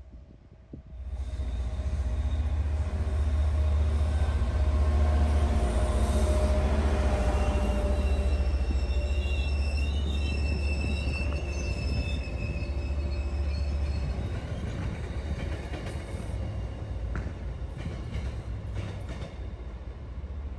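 MBTA diesel-hauled commuter train with bi-level coaches passing close by, with a steady deep rumble that starts about a second in and eases off near the end. High wheel squeal rings out through the middle as the train takes the turnout onto the branch line.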